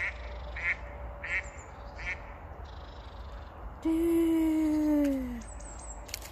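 Duck quacking in a steady series, about one quack every two-thirds of a second, four times in the first two seconds. About four seconds in comes one long, loud call falling in pitch.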